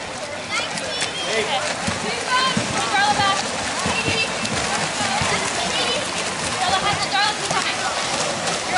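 Overlapping shouts and calls from several voices, none clear enough to make out, over the steady splashing of water polo players swimming and fighting for the ball.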